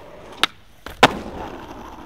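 Skateboard wheels rolling on street pavement, with a sharp clack about half a second in and a louder bang about a second in, after which the rolling goes on.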